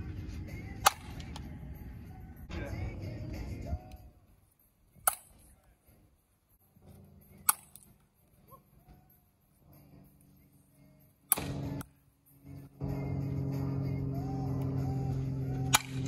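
Softball bat striking front-tossed softballs: five sharp cracks, each a few seconds apart.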